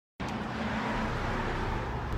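Steady road traffic noise, an even rushing heavy in the low end, starting a moment after a brief silence.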